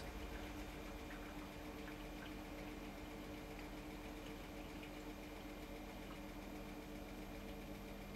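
Quiet room tone with a faint, steady hum.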